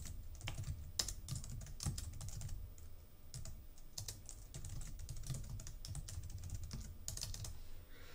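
Typing on a computer keyboard: a run of quick, irregular keystrokes, with a short pause about three seconds in.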